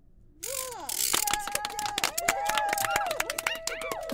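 A few voices give an impressed 'ooh' that rises and falls, then long held cheering tones over fast hand clapping, as an audience reacting with delight.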